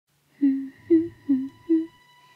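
A high voice humming four short sing-song notes, alternating low and high.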